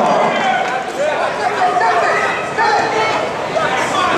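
Crowd of spectators in a gym shouting and calling out, many voices overlapping.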